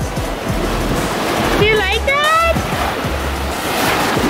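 Ocean surf washing in a steady rush, with wind on the microphone. Midway a young child gives one short, high-pitched vocal cry that rises in pitch.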